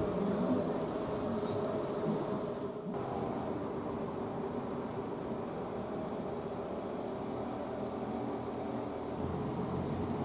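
A steady low mechanical hum over a continuous background rush. The sound shifts abruptly about three seconds in and again near the end.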